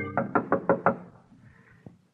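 Sound-effect knocking on a door: about five quick, evenly spaced raps, heard as a music bridge dies away at the start. There is a faint click near the end.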